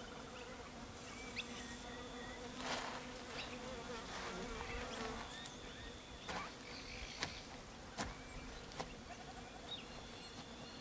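Faint buzzing of flying insects, wavering in pitch as they move about, with a few soft clicks in the second half.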